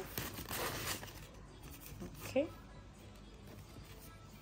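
Plastic rustling and crinkling as a plastic tea box and its packaging are handled, strongest in the first second. A short murmur of voice comes a little past halfway.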